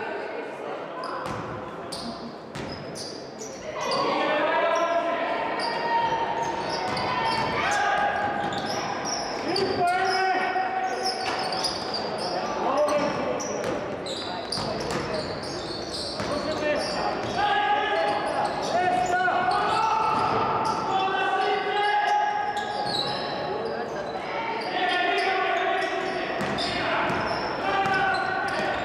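Basketball game sounds in a gym hall: a ball bouncing on the wooden floor, with players and spectators shouting and calling out. The voices grow louder about four seconds in.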